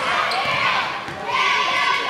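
Basketball game in a large gym: the ball bouncing on the hardwood court amid steady crowd chatter and shouts.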